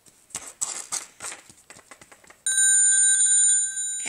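Rustling handling noise, then, about two and a half seconds in, a cordless phone's electronic ringtone sounds loudly as a chord of steady high tones for about a second: an incoming call.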